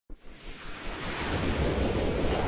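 Whoosh sound effect of an animated channel intro: a rushing noise swell with a deep rumble, building steadily louder after a brief click at the very start.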